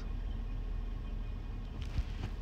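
Steady low hum of a car's cabin, with a faint click near the end.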